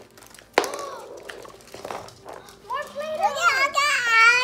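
A small child's high, wavering voice, excited babbling or squealing, in the last second and a half, after a few light clicks and handling noises.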